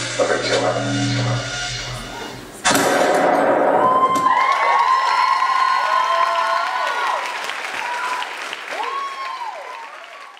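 Electronic music with a heavy bass line ends about two and a half seconds in. An audience then breaks into applause and cheering, with high whooping calls that rise and fall, dying away near the end.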